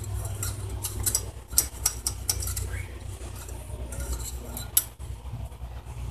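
Scattered light metallic clicks and scrapes of an engine oil dipstick being drawn from its tube to check the newly filled oil level, with the engine not running, over a low steady rumble.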